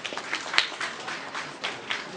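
Sparse, scattered handclaps from a few people in the audience: irregular sharp claps, several a second, during a pause in the speech.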